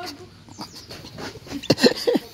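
A woman laughing, with a couple of short high-pitched squeals near the end.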